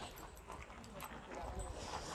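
Faint voices in the background, under the rustle, small knocks and low rumble of a phone being carried by someone walking.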